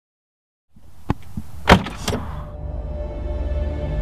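A few sharp clicks and knocks, the loudest about a second and a half in, then a low, steady, dark music drone that builds.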